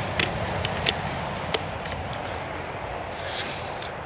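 Steady outdoor background noise with a few sharp clicks of the handheld camera being moved, three of them in the first second and a half, and a brief high-pitched sound about three and a half seconds in.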